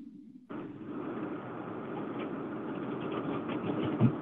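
Steady, even background noise carried over a telephone line from a caller's open microphone, starting about half a second in.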